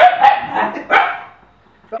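Dog barking: about four short, sharp barks in quick succession in the first second or so, then stopping.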